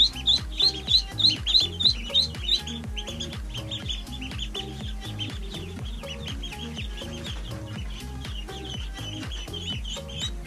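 Khaki Campbell ducklings peeping over background music with a steady beat. The peeps are loud and rapid, about three or four a second, for the first two or three seconds, then carry on fainter.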